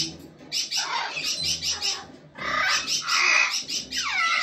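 Pet white cockatoo giving harsh, grating chatter in two bursts with a short lull between.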